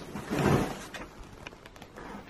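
A brief rustling scrape about half a second in as an old wooden wardrobe is opened by hand, with its hanging clothes being disturbed, followed by faint handling noise.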